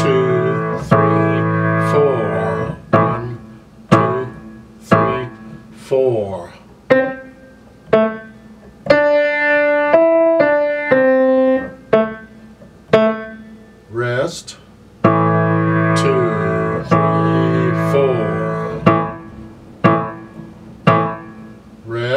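Grand piano played slowly with the left hand alone, a note or chord about every second, some held chords ringing on. Under it a Cherub WMT-220 digital metronome clicks steadily at 60 beats a minute.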